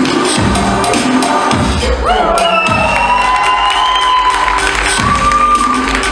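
Loud dance music with a thumping beat that drops out about two seconds in, leaving long held, gently gliding tones for about three seconds before the beat comes back. An audience cheers over it.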